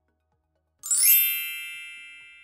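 A bright ding sound effect about a second in: a quick upward swish into a ringing chime that fades slowly, a transition cue for the next numbered item.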